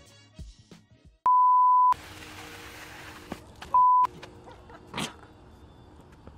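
Two loud electronic beeps at one steady pitch: a longer one a little over a second in, lasting over half a second, and a short one about four seconds in, with a faint hiss between and after them.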